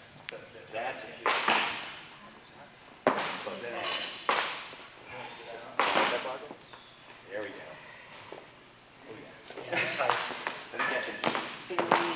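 Indistinct talking among several people in a large gym hall, with a few sudden sharp knocks or clanks.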